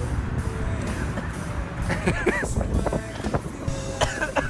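Wind buffeting the phone's microphone: a loud, uneven low rumble. Soft background music runs under it, and a brief voice sounds about two seconds in.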